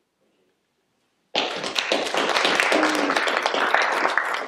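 A room of people applauding, starting suddenly about a second in after a short silence and going on as a dense, even clatter of many hands clapping.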